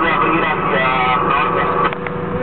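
Boat engine running steadily, with indistinct voices over it.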